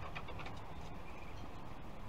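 Outdoor background with a bird calling, over a steady low background noise.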